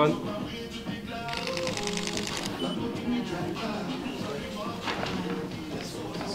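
Camera shutter firing in a rapid burst of clicks about a second in, lasting about a second, over background music.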